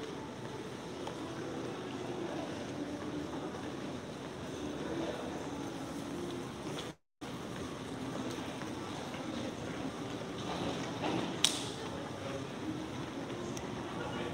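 Low, steady hum of an empty airport terminal's air handling, with faint distant voices in it. The sound cuts out completely for a moment about halfway through, and a single sharp click stands out about three-quarters of the way in.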